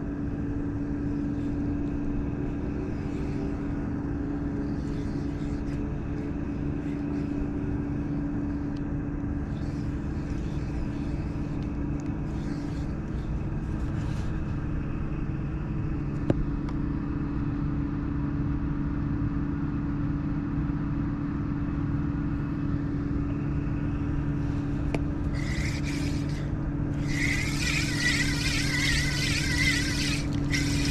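Steady low mechanical hum and rumble, with a single click about halfway through. In the last few seconds a spinning reel is cranked quickly, its gears whirring.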